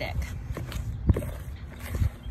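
Wire whisk tapping and scraping against a plastic mixing bowl as a stiff cornstarch and baking soda paste is stirred, in irregular knocks.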